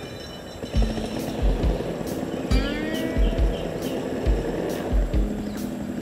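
Background music with a steady beat and bass pulses, starting under a second in.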